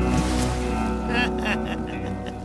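Film soundtrack: music and a low rumble dying away, with water bubbling and sloshing as tyres surface, in short wavering bursts about a second in.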